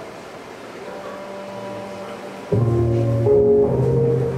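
Live rock band starting a song: faint held tones at first, then about two and a half seconds in the full band comes in loudly with sustained chords over a deep bass note.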